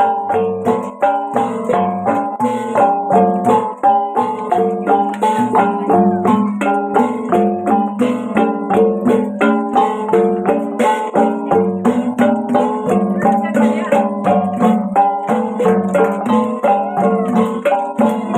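An ensemble of handheld bossed gongs, each at its own pitch, struck in a fast, steady, interlocking repeating rhythm, with the ringing notes overlapping.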